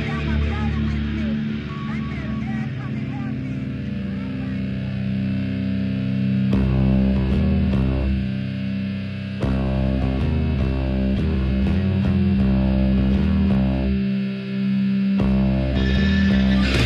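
Hardcore punk song intro: distorted electric guitar chords ringing out heavy and slow. Drum and cymbal hits join about six and a half seconds in and build toward the full band.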